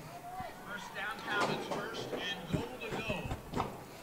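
Indistinct background voices: short stretches of talk, quieter than the commentary around them.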